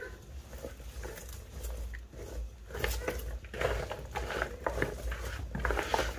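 Hands tossing raw potato sticks with spices in a plastic bowl: irregular soft clacks and rustles of the potato pieces, busier in the second half, over a low rumble.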